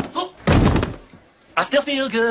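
A single heavy thud about half a second in, as a horse comes down hard on the ground after bucking. A song with vocals plays before and after it.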